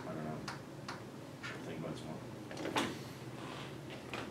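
A lull in a quiet room: faint low speech right at the start, then a few light clicks and taps, the clearest one nearly three seconds in.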